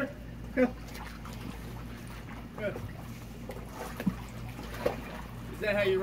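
Pool water lapping and sloshing softly as a man moves through it beside a large inflatable pool float, with a few brief voice sounds over a steady low hum.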